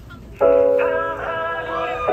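Live rock band starts playing about half a second in: electric guitars strike a loud sustained chord, which shifts once or twice.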